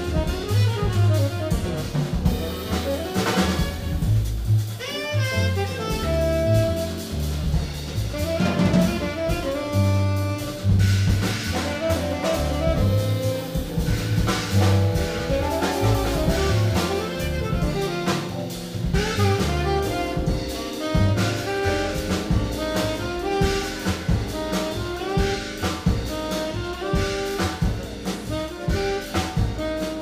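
Live jazz combo playing: a saxophone carries a moving melodic line over walking upright double bass and a drum kit with steady cymbal strokes.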